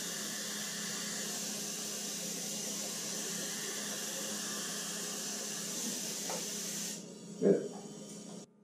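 Dental suction hissing steadily over a low hum, cutting off suddenly about seven seconds in.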